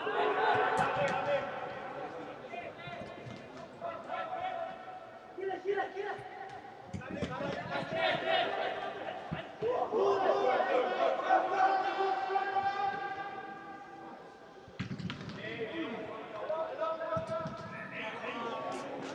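Football players shouting and calling to each other on an indoor pitch, their voices echoing in the large hall, with a few thuds of the ball being kicked.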